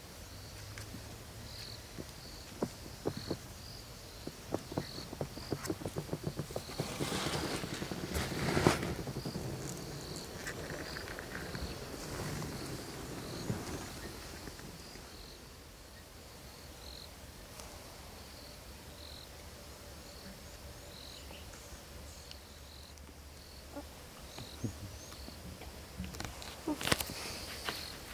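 An insect chirps steadily, a short high note repeating about once a second. For several seconds in the first third there is rustling and crackling in dry grass, loudest around eight seconds in, from a leopard walking through the grass.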